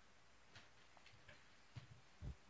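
Near silence: room tone with about five faint, soft clicks, the loudest two close together near the end.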